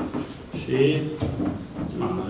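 A man speaking Romanian in a halting way, with short pauses between words, in a small room; a faint knock or handling sound from the table comes between the words.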